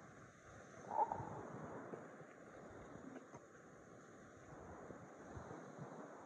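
Faint hiss of wind and distant surf, with a soft crunch of a footstep on beach pebbles about a second in and a few faint ticks of stones after it.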